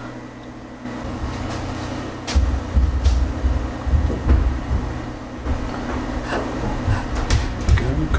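Sherline mill's X-axis table being pushed by hand along the saddle's metal ways, a low scraping rumble beginning a couple of seconds in, with several sharp knocks and clicks.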